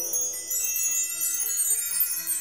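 Magic sparkle sound effect: a bright, shimmering wash of chimes over a few held tones. It marks pieces appearing by magic.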